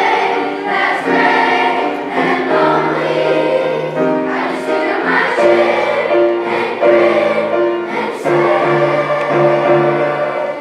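Children's school choir singing together, held notes moving from one to the next in phrases.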